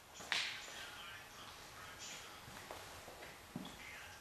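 Quiet room with a few faint scuffs and taps: one sharper scuff about a third of a second in, then softer ticks near the end.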